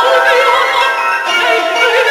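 Mezzo-soprano singing sustained notes with a wide vibrato, accompanied by grand piano.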